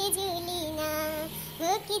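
A high voice singing a devotional bhajan to the goddess unaccompanied, a slow melody of long, wavering held notes; one phrase ends partway through and the next starts with an upward glide.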